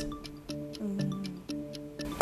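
Quiz-show thinking music: a clock-like tick-tock beat about twice a second over soft sustained tones, timing the contestant's answer.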